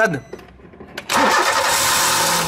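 Car engine starting about a second in, then running with a loud, even hiss of air being sucked in through a cracked brake servo (booster) vacuum check valve. This vacuum leak is what unsettles the idle and makes the brake pedal hard.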